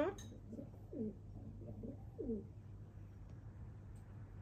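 Young crow giving a few soft, low calls in quick succession over the first two and a half seconds.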